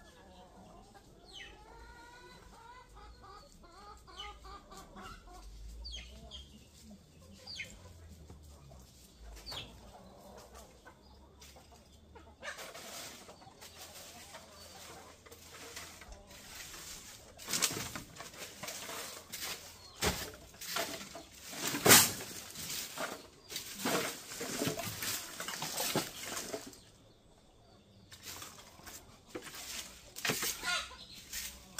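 Chickens calling and clucking in the first few seconds, then repeated bouts of wing flapping and scuffling, loudest about two-thirds of the way through.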